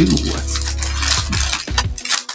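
Foil trading-card booster pack wrapper crinkling and tearing as it is opened and the cards slid out.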